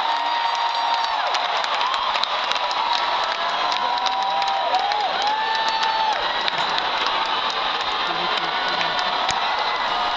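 Large arena crowd cheering and screaming, with scattered clapping; several long, high-pitched screams stand out above the din.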